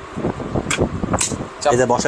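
A few short plastic clicks and knocks as a food processor's plastic slicing disc is handled and set onto its bowl. A man's voice comes in near the end.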